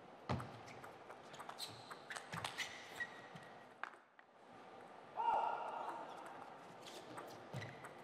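Table tennis rally: a celluloid ball clicks sharply off the rubber bats and the table, several hits less than a second apart, with a hall echo. About five seconds in there is a brief, louder sound with a pitched ring.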